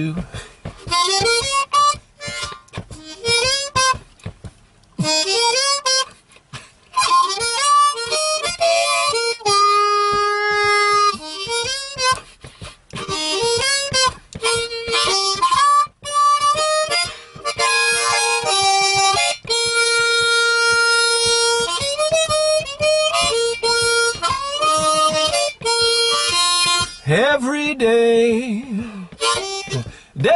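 Diatonic blues harmonica in E-flat played solo in quick riffs and phrases, with long held notes about a third and two-thirds of the way through and bent, wavering notes near the end.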